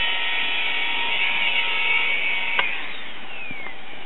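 Electric steam-raising fan on a live-steam locomotive's chimney, whining steadily as it draws the fire, then switched off with a click about two and a half seconds in, its pitch falling as the motor spins down.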